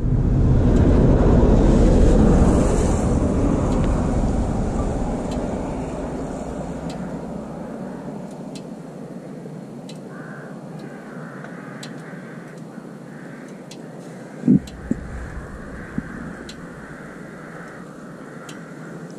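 A vehicle passing on the road: its rumbling road noise swells over the first two seconds and fades away over the next several. Faint ticks come about once a second after that, and there is a short knock about two-thirds of the way through.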